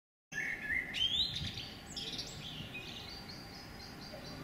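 Birds chirping over a faint, steady outdoor hiss, starting after a brief dead silence. A few quick rising chirps come in the first two seconds, then fainter chirping.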